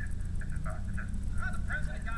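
A steady low hum, with faint, brief voice-like sounds over it.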